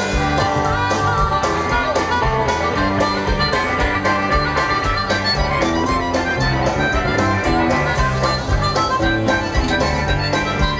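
Live country-rock band playing an instrumental break on electric guitars, bass and drums, with a harmonica carrying the lead line.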